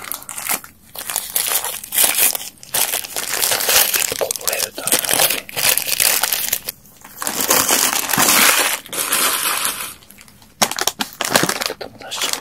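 Paper and plastic wrapping of a KFC twister wrap crinkled and torn open by hand, close to the microphone. A loud crackling comes in long runs with short pauses, the longest pause near the end.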